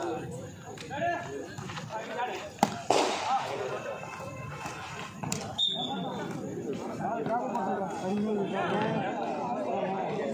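Volleyball struck by hand, a sharp slap about two and a half seconds in and another a little after five seconds, over steady chatter of players and onlookers.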